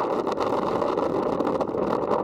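Open-topped Hummer driving along a rock trail: a steady rush of engine and drive noise, heard from the open back seat.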